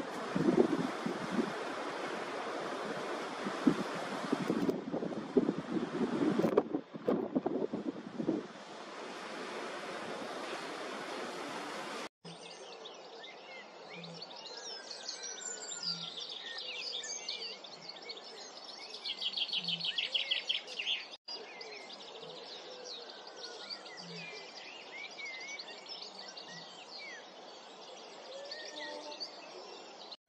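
For the first twelve seconds or so, wind buffets the microphone. Then, after a sudden cut, a chorus of small birds chirps and sings over marsh and reedbed. A fast rattling trill comes a little past the middle, and faint low thuds sound roughly every two seconds.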